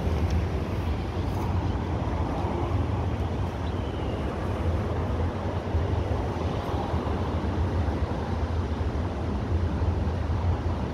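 Steady low outdoor rumble, like road traffic, with no clear single event.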